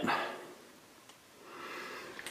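Quiet room with a speaking voice trailing off at the start, then a faint soft noise rising near the end.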